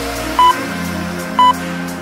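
Two short, high electronic countdown beeps, one second apart, over electronic background music: a workout interval timer counting down the last seconds of a rest period.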